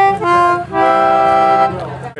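Two-row Anglo concertina playing the last single notes of a descending run, then holding a chord for about a second that fades out near the end.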